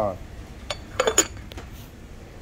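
A few short clinks of china and cutlery on a table, most of them bunched together about a second in.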